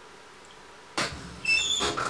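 Makeup items being handled: a sharp click about a second in, then rustling with a few brief high squeaks.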